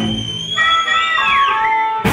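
Live blues band led by an amplified harmonica: a high held harmonica note that bends downward about three quarters of the way through, over the band. A sharp drum and cymbal hit lands just as it ends.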